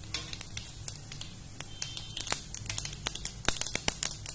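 Cumin seeds crackling and sputtering in hot oil in a nonstick frying pan, a spattering of sharp little pops that come faster from about halfway through as the seeds heat up.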